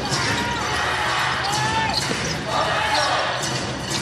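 Arena crowd noise during live basketball play, with a basketball bouncing on the hardwood court.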